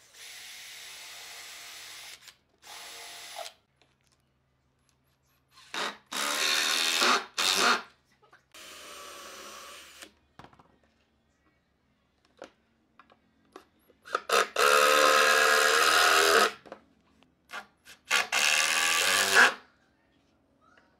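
Makita cordless drill running in about six short bursts as it bores into the edge of wooden boards; the early bursts are lighter, and the three later ones are louder with the motor under load. Small knocks from handling the boards fall in the gaps.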